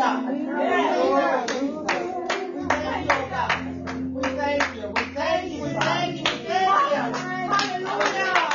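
Hands clapping on a steady beat, a bit over two claps a second, along with a gospel song: sustained keyboard chords and voices singing.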